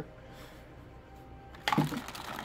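Quiet room tone, then near the end a sudden loud rustle of hands rummaging in a cardboard box of parts packed in plastic bags.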